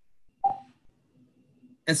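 A single short electronic blip about half a second in, then a man starts speaking near the end.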